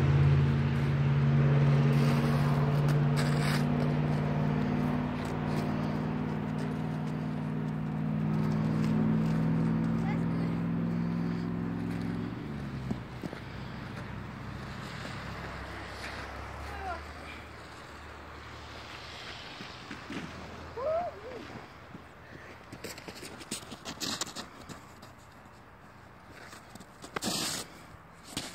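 A motor vehicle engine running with a steady low hum, stopping about twelve seconds in. After that it is quieter, with faint scrapes and a few short voice sounds.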